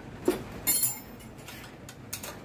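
A brief metallic clink of small steel hardware a little under a second in, as a washer and nut are fitted onto a scooter steering damper's mounting bolt.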